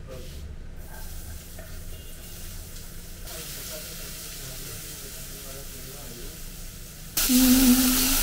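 Chopped onion sizzling in hot olive oil in a saucepan as a spoon stirs it. The sizzle is faint at first, then loud and close from about seven seconds in.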